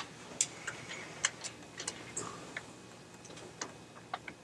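Scattered light clicks and taps at uneven intervals, about a dozen, the loudest about a second in, over faint room noise.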